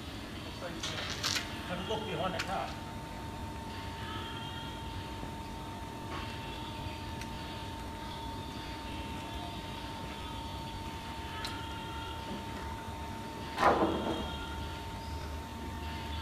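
Industrial steam vapour barrel-cleaning machine running, feeding dry steam through a diffuser inside an oak wine barrel: a steady high tone over a low hiss. A few knocks and clatter in the first couple of seconds, and a brief louder noise near the end.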